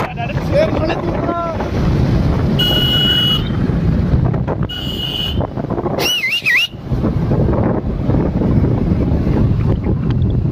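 Wind buffeting the microphone over the running engine and road noise of a motorbike being ridden. Near the middle, two short horn beeps about two seconds apart, then a brief wavering whistle-like tone.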